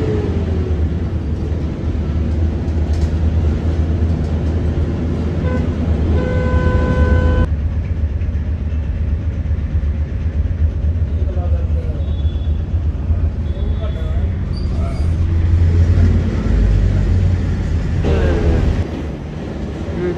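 Steady low rumble of a city bus's engine and road noise, heard from inside the moving bus. A horn sounds one steady note for about a second, about six seconds in.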